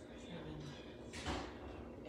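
A woman's quiet voice: a brief low hum, then a short breathy rush about a second in, like an exhale or a half-voiced count.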